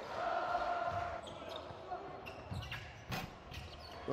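Court sound in a basketball arena: a basketball bouncing on the hardwood floor, with faint voices and a sharp knock about three seconds in.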